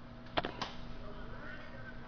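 Two sharp knocks about a quarter of a second apart over a steady low hum.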